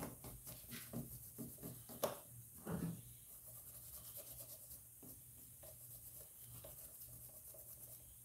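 Paintbrush dry-brushing paint onto a mask, the bristles scratching over the surface in short repeated strokes, with a sharp tap about two seconds in. The strokes grow fainter after about three seconds.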